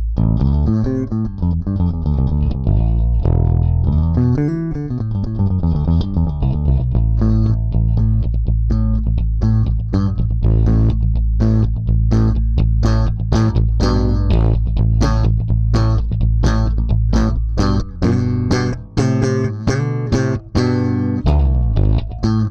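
Music Man StingRay Special four-string electric bass with always-active electronics, played through the Starlifter bass preamp with its EQ engaged. It starts with held low notes and a few slides, then settles into a steady run of evenly repeated plucked notes.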